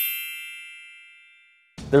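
A bright bell-like chime, several ringing tones at once, fading away over about a second and a half.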